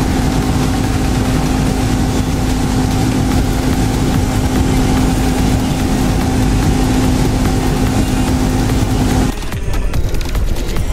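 Mud boat's Mudbuddy surface-drive outboard motor running steadily at cruising speed, a loud, even drone with a constant hum, mixed with water and wind noise. It cuts off abruptly near the end.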